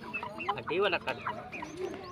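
Chickens clucking: a string of short calls in quick succession.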